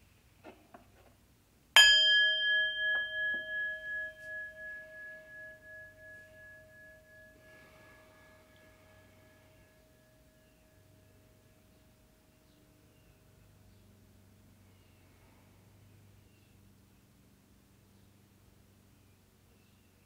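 Brass singing bowl struck once, ringing with a wavering, pulsing tone that fades away over about ten seconds, sounded to open a guided meditation.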